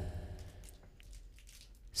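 A voice's added reverb tail dying away over the first half second, then a quiet studio with a faint low hum and a single soft click about a second in.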